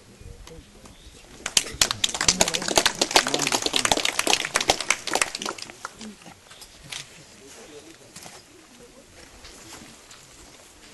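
Crowd clapping, a dense burst of applause that starts about a second and a half in, lasts about four seconds and then dies away to a few scattered claps.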